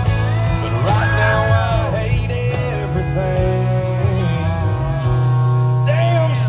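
Country band playing live through a concert sound system, heard from the audience, with a sustained low bass under a melodic lead line.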